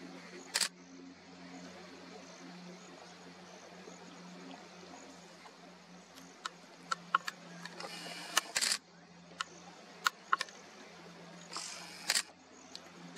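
Camera shutters clicking: a quick double click about half a second in, then a run of single clicks and two short rapid-fire bursts in the second half. A steady low hum runs underneath.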